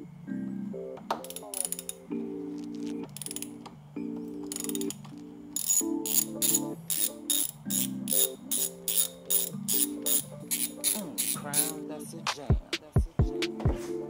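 A ratchet wrench clicking in quick runs, about four clicks a second, as it undoes the center top bolt that holds the oil lines to a BMW N55 engine's oil thermostat housing. A few dull knocks come near the end, with background music throughout.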